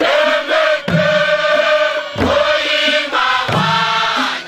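A group of voices chanting together in long held phrases. Hand drums beat underneath about once every second and a bit.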